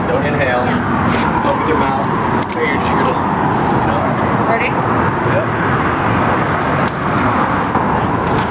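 Steady outdoor urban ambience with traffic noise, faint background voices and a few short sharp clicks, one of them near the end.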